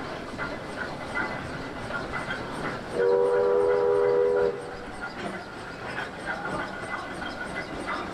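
A steam whistle blown once, about three seconds in, sounding a chord of several steady tones for about a second and a half. Under it runs a steady background of faint irregular clanking and ticking from the working steam rail crane.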